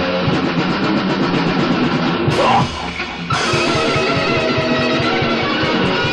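Metal band rehearsal recorded live on a stereo tape deck with two cheap room microphones: distorted electric guitars and a drum kit playing fast, with a brief break about halfway through before the band comes back in. No bass guitar can be made out.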